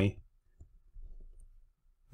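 Near silence with a few faint soft taps and a brief soft scratching about a second in: a stylus writing on a tablet screen.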